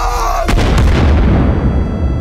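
A trailer explosion sound effect: a sudden loud blast about half a second in, followed by a long rumbling decay.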